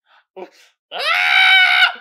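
A young boy screaming: one shrill, high-pitched scream held at a steady pitch for about a second, coming in just after a short "ah".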